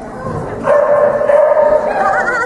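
A dog giving one long, high yelp that starts a little over halfway through and is held for more than a second at a steady pitch.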